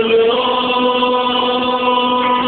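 Two men singing through microphones, holding one long, steady note.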